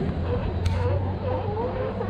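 Faint background talk over a steady low rumble, with a single sharp click about two-thirds of a second in.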